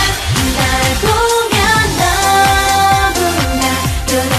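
Pop song performed live: a female vocal group singing the chorus over a backing track with a steady kick-drum beat.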